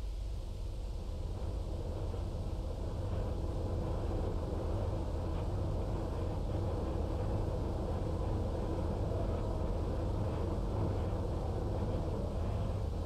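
Woodworking machine running steadily as a long boring bar drills into a wooden gunstock blank, a low, even rumble.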